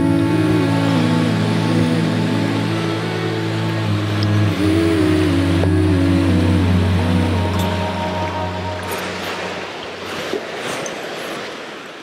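Slow ambient background music with long held bass notes and a melody stepping slowly up and down, fading out over the last few seconds. Under it runs a steady rush of water from a creek and small waterfall.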